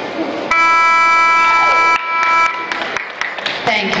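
Arena time horn (buzzer) sounding one loud, steady blast of about a second and a half, fading into the hall's echo. It marks the end of the timed cutting horse run.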